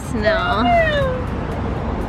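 A woman's high-pitched, drawn-out exclamation of delight, gliding down in pitch over about a second, followed by steady low background noise.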